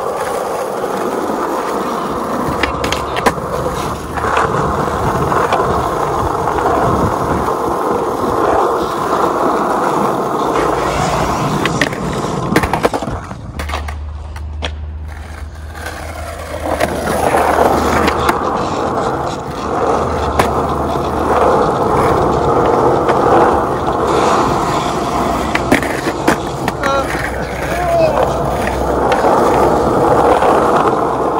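Skateboard wheels rolling on rough asphalt, a steady rumble broken by scattered sharp clacks of the board popping and landing. The rolling drops away for a few seconds about midway, then picks up again.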